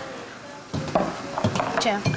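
Light kitchen clatter of pots, crockery and utensils being handled at a counter, a few small knocks and clinks over a soft hiss, with low voices in the background.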